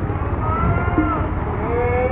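A bus's basuri musical air horn sounding several tones at once that glide up and fall back in long swoops, over the low rumble of the bus engine.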